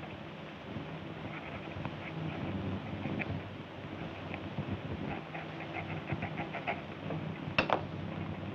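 A pen scratching on paper as a receipt is written: clusters of faint short scratches over a steady hiss and hum, then a sharp click near the end.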